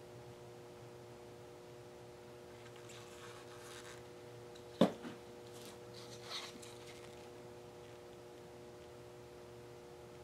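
Quiet room with a steady low hum, soft rustling as gloved hands handle plastic paint cups, and one sharp knock a little before the halfway point as a plastic cup is set down on the plastic-covered table.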